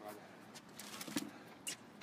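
A few faint, sharp knocks of tennis balls being struck and bouncing on the court. The sharpest comes a little past a second in and a fainter one near the end.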